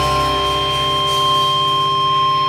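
Rock recording: an electric guitar holds a high tone steady over a pulsing low bass line.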